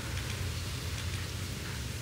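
Room tone in a pause between spoken lines: a steady low hum under a faint even hiss, with no distinct event.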